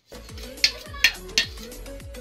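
Metal spoons clinking and scraping against stainless steel plates, with three sharp clinks less than half a second apart in the middle, over background music with a repeating bass beat.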